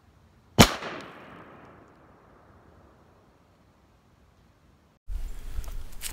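A single shot from an 1842 Springfield .69-calibre smoothbore percussion musket, fired about half a second in: one sharp report followed by an echo through the woods that dies away over about two seconds.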